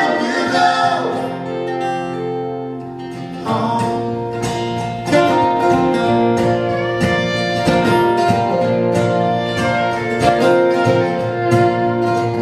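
Acoustic guitar strumming with a fiddle, playing a folk song's instrumental passage with no vocals. Long held notes come first, and the guitar strumming comes in stronger about three and a half seconds in.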